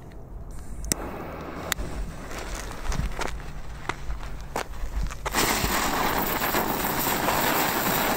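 Katan Camellia Flower Mini ground-spinner firework: a few faint clicks at first, then about five seconds in it ignites with a sudden, steady hiss of spraying sparks.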